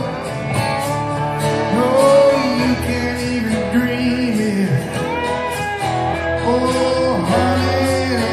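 Live rock band playing, with a male lead vocal sung into a handheld microphone over guitars; the singer holds and bends long notes.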